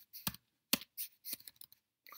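Computer keyboard being typed on: about half a dozen separate, irregularly spaced key clicks.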